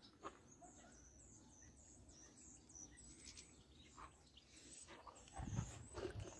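Faint, high bird chirps scattered through near silence. A few low thumps come near the end.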